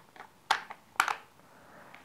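Plastic battery cover of a wireless keyboard being pressed back into place, snapping in with two sharp clicks about half a second apart.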